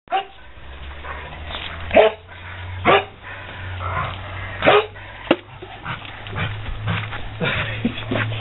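A dog barking in short single barks spaced a second or two apart, excited while playing with a ball.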